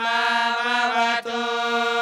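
A young man's solo Vedic chant, holding a long steady note on one pitch, with a brief break a little after a second in before the note resumes.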